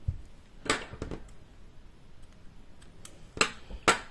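A low thump, then four sharp clicks and knocks of small crafting tools being handled on a tabletop, two close together about a second in and two near the end.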